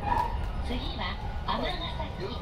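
Steady low running rumble inside a moving JR 223 series electric train, with a voice speaking over it in short phrases that rise and fall in pitch.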